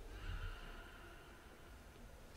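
Quiet pause in a large church: faint reverberant room tone with a low rumble, and a brief faint high squeak in the first second.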